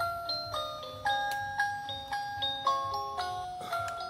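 A tinny bell-like melody plays from a miniature TV-shaped Christmas village decoration, a few struck notes a second, each ringing and fading.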